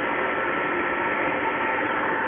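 Steady hum and hiss of the 1967 Jeep Commando's engine idling, even and unchanging.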